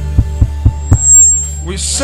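Worship music: a sustained low bass drone under a steady beat of about four strokes a second, which stops about a second in. A voice comes in near the end.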